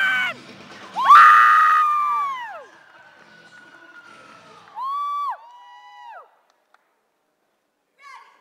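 Spectators cheering for a cheerleading routine: a loud burst of shouting with long high 'woo' calls about a second in that trails off, then two shorter shouts around five seconds in before the noise dies away.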